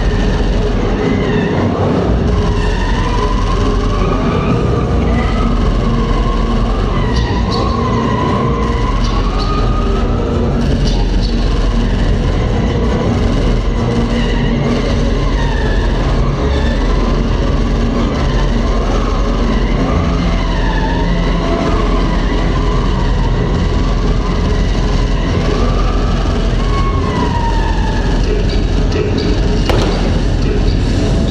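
Car engines revving with tyres squealing in wavering, drawn-out screeches over a steady low engine rumble as the cars are driven hard around the arena floor.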